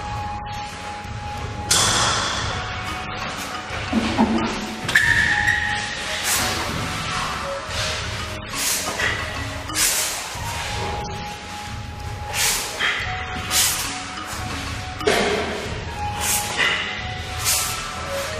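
Background music with held notes, over which come about a dozen sharp, irregular snaps and thumps from a martial artist performing a form: the uniform snapping on strikes and bare feet landing on a foam mat.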